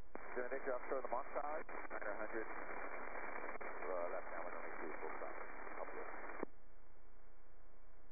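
A voice transmission over the aircraft radio, thin and narrow-sounding speech that the words can't be made out of. It switches on abruptly and cuts off suddenly about six and a half seconds in.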